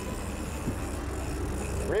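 Fishing boat's engine running with a steady low hum under the sea and wind noise, while an angler fights a fish on rod and reel.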